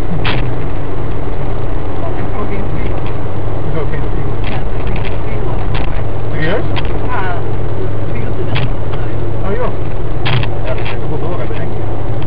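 Steady drone of engine and tyre noise inside a car cruising at motorway speed, heard through a dashcam's microphone, with brief clicks throughout.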